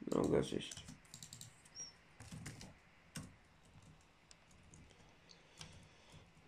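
Irregular keystrokes on a computer keyboard, with a few mouse clicks, as a new search word is typed.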